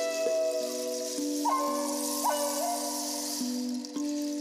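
Wooden Native American-style flute playing a slow melody of long held notes, one with a wavering vibrato, over several lower notes that keep sounding underneath, with breathy air noise.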